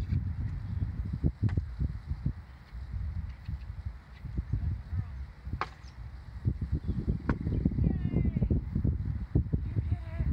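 Wind buffeting the microphone in irregular, low rumbling gusts, with a few sharp knocks.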